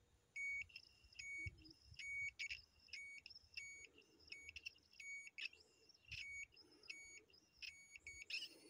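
Homemade ionic/electrostatic long range locator beeping faintly: a quick, irregular string of short, high electronic beeps, the signal it gives when it senses a target.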